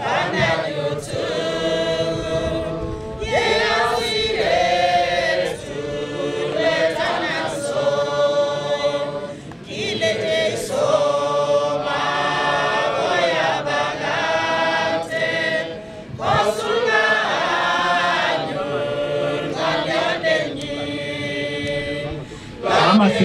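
A group of men and women singing a hymn together in chorus, with brief pauses between phrases about ten and sixteen seconds in.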